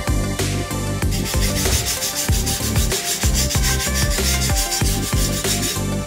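A wire brush scrubbing the metal wheel hub, a rough rubbing and scraping heard from about a second and a half in, over electronic background music with a steady beat.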